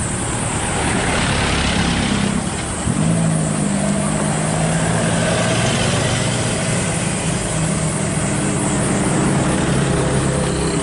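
A pickup truck's engine running at low speed right alongside, a steady low hum throughout. Motorcycles pass in the first couple of seconds, bringing a brief louder rush of noise.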